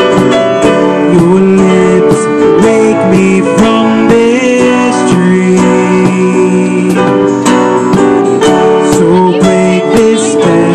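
Live acoustic band playing: strummed acoustic guitar and a Yamaha CP digital stage piano, with a cajón slapped by hand keeping a steady beat.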